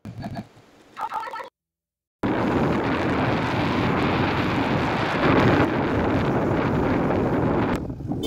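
Wind buffeting the microphone of a phone carried on a moving motorbike, a loud steady rush that starts suddenly about two seconds in, after a brief voice and a short silence, and eases just before the end.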